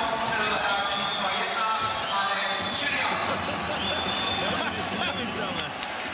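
Ice hockey arena ambience: steady crowd noise with a man's voice talking and a few short sharp clicks.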